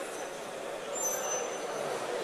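Indistinct murmur of many people talking in a large sports hall, with a couple of faint, thin high-pitched squeaks about a second in.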